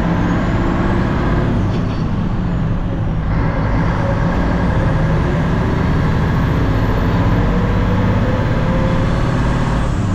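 Old heavy truck's engine running as it drives, heard from inside the cab. The engine eases off briefly about two seconds in, then its pitch slowly climbs as the truck pulls on.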